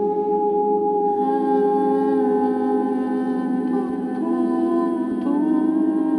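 Ambient drone music built from layered, long-held wordless vocal tones on a looper. New held notes enter about a second in, and twice more near the end.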